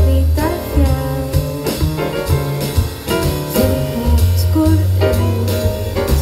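Live jazz combo playing: grand piano with double bass notes underneath and drums with cymbals keeping time.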